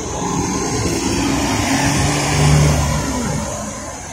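City transit bus passing close by and pulling away, its engine loudest about two and a half seconds in, then fading as it drives off.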